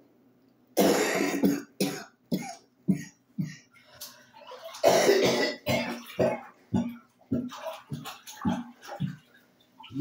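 A person coughing in a long fit. A hard, drawn-out cough comes about a second in and another about five seconds in, with shorter coughs about twice a second between and after them.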